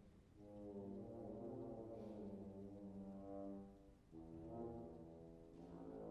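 Trombone playing slow, sustained notes, faintly. A long note breaks off about four seconds in and a new phrase begins.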